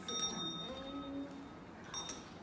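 Small hand bell ringing, its bright tones fading away over the first second or so, then struck again near the end.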